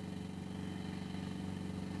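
Riding lawn mower's small engine running steadily with a low hum while pushing a pickup truck.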